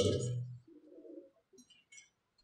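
A man's voice at a podium microphone trails off, followed by a brief faint low murmur and soft rustles of sheets of paper being handled near the end.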